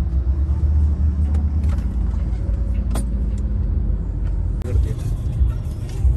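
Steady low rumble of a car's engine and tyres heard inside the cabin from the back seat while driving, with a single sharp click about halfway through.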